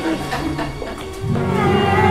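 A child singing a show tune from a musical over instrumental accompaniment. The accompaniment comes in fuller and louder just over a second in.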